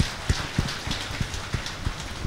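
Steady hiss of background noise with scattered soft, irregular taps, in a pause between spoken phrases.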